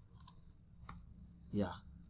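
A few isolated clicks from a computer keyboard and mouse as code is edited, the sharpest about a second in, with a short spoken "yeah" near the end.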